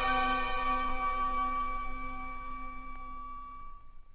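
An orchestra's final held chord, a few steady tones slowly fading away at the close of the song.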